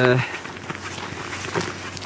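Footsteps walking on a snowy path, faint and irregular, after a drawn-out spoken 'uh'.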